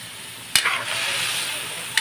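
Metal spatula knocking and scraping against a metal wok while stirring squid and garlic, with frying sizzle. A sharp clank about half a second in sets off a burst of sizzling that lasts about a second, and another clank comes near the end.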